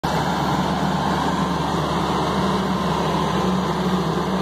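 Mitsubishi L200 Triton pickup's engine running steadily under load as it tows a car up a muddy, slippery hill.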